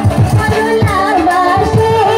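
A woman singing a Bhawaiya folk song into a microphone over drum accompaniment. Her wavering melody comes in about half a second in.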